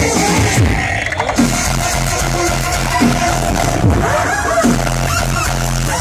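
Dubstep played loud over a festival sound system, heard from within the crowd: a heavy bass line with repeated sweeps that fall in pitch every second or so.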